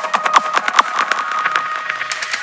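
Electronic dance music in a DJ mix breakdown: the bass is cut out, leaving a dry clicking percussion pattern of about five hits a second over a held high tone, the hits thinning out in the second half.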